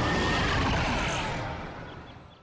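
A rushing whoosh that swells up, holds, then fades away, like a vehicle passing by: a cartoon sound effect.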